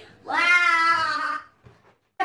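A young child's voice: one drawn-out, high squealing note lasting about a second, starting shortly after the beginning and stopping well before the end.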